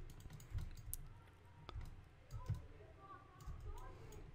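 Faint, isolated clicks of a computer mouse and keyboard being worked at a desk, a few spaced clicks over a low room hum.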